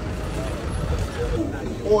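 Street-market background: a steady low rumble, typical of traffic, under faint voices of people nearby.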